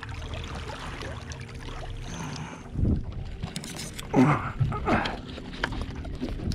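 Wind on the microphone and water moving against a small boat's hull, with a dull thump about three seconds in. Near the end a man grunts and clears his throat.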